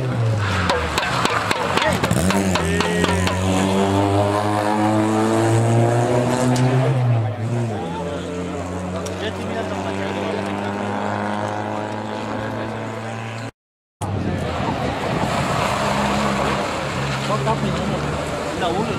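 Rally car engine approaching under load, its note climbing for several seconds, dropping sharply about seven seconds in and then holding steady. It cuts off abruptly near the end and the engine sound then resumes.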